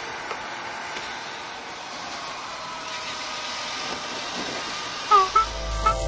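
Steady wind and road rush of a Honda ST1300 Pan European motorcycle riding at motorway speed, heard from a helmet-mounted camera. About five seconds in, a few short rising musical tones cut in as intro music begins.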